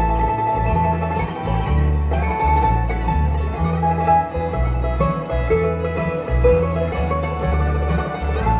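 Live bluegrass band playing an instrumental break on banjo, acoustic guitar, fiddle and upright bass, the bass notes keeping a steady beat.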